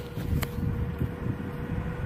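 Steady low machinery rumble with a constant hum, mixed with wind on the microphone; a single sharp click about half a second in.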